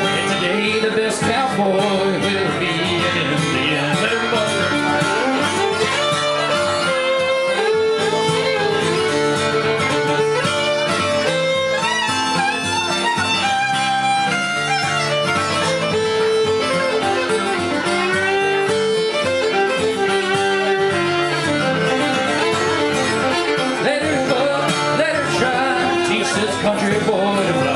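Acoustic guitar strumming a country/bluegrass rhythm while a fiddle plays the lead melody with long bowed and sliding notes: an instrumental break between verses.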